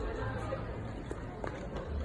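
Background chatter of several voices, with no clear words, over a steady low street rumble.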